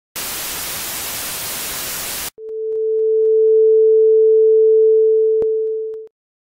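Analog television static hiss from an untuned set for about two seconds, cutting off abruptly, followed by a steady single-pitch test-card tone that fades in and holds, with one brief click shortly before it stops.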